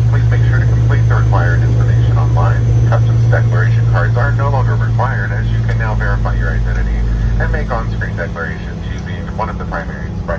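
Steady low drone of a taxiing jet airliner heard inside the cabin, with a flight attendant's PA announcement talking over it. The drone weakens about three-quarters of the way through.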